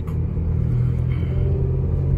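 Car cabin noise while driving: a steady low engine hum with road rumble, heard from inside the car.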